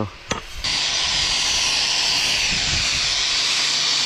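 A single sharp knock, then a handheld angle grinder grinding steadily against the steel axe head from about half a second in, a loud hissing grind with a low motor hum under it, cutting off at the end.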